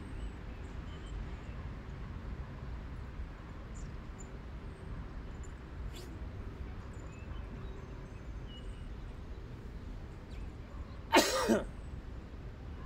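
A steady low outdoor rumble, then near the end a woman's short laughing "huh" in two quick bursts.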